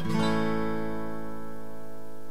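Acoustic guitar: an open A chord strummed once and left to ring out steadily.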